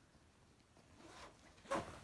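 A fabric bag's zipper rasps briefly near the end as the bag is zipped shut, after a faint stretch of handling.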